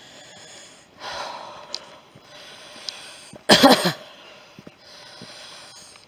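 A woman's heavy breathing as she walks, with a loud, partly voiced exhale about three and a half seconds in.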